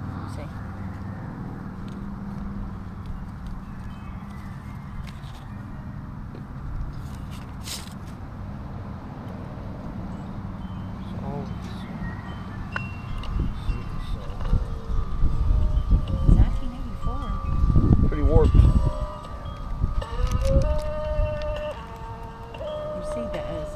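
A small portable record player playing a record: from about halfway in, steady chime-like tones come up, with a louder, wobbling passage in the last few seconds.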